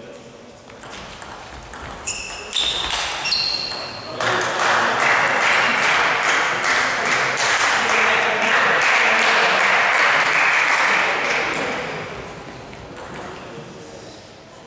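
Table tennis rally: quick sharp clicks of the ball off bats and table, with a few high squeaks, for about four seconds. Then, once the point is won, spectators clap and call out loudly for about eight seconds before it dies away.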